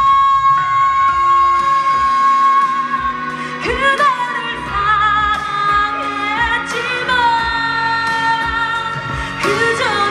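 A woman singing a Korean ballad live over backing music, holding a long wavering note at the start and sliding up into new phrases about four seconds in and again near the end.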